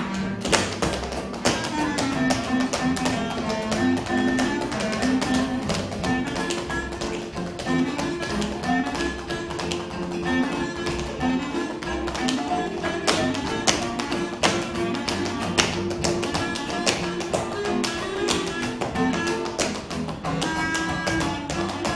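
Tap shoes striking a stage floor in a fast, dense run of taps from a tap dance solo, over accompanying music with sustained pitched notes.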